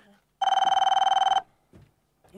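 Desk telephone ringing: one electronic ring about a second long, a steady high tone that flutters rapidly.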